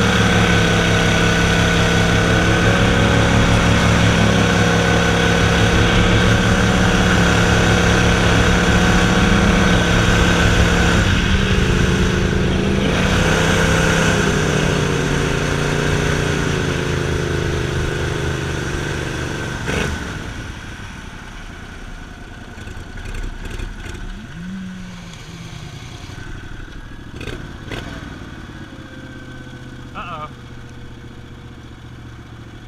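Gator-Tail surface-drive mud motor on a jon boat running at steady high throttle, easing off briefly a little before halfway. About two-thirds in it is throttled back to a lower, quieter running speed with a couple of short blips.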